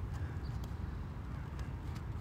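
Pause between speech: quiet room tone, a low, uneven rumble with faint background hiss.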